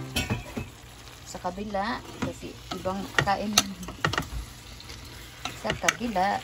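A wooden spatula stirring chicken curry in a pan, scraping and knocking against the pan at irregular moments over a low sizzle.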